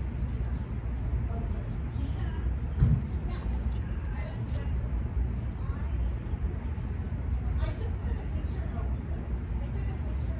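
Steady low background rumble with soft, indistinct speech over it, and a single thump about three seconds in.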